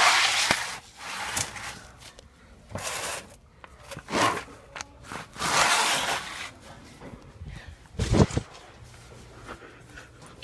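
Rustling and rubbing handling noise in irregular bursts, like fabric and a phone brushing against the microphone, with a low thump about eight seconds in.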